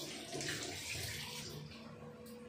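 Rushing noise of running water, like a tap left running, fading out about three-quarters of the way through, over a faint steady hum.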